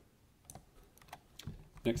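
A few faint, scattered computer keyboard clicks.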